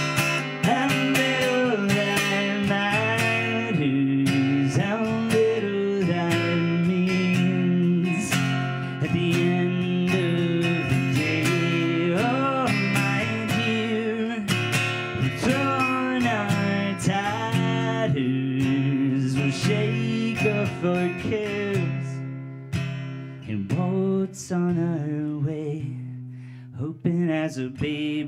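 Acoustic guitar played solo in an instrumental break between verses, strummed chords under a bending melodic line, growing quieter over the last few seconds.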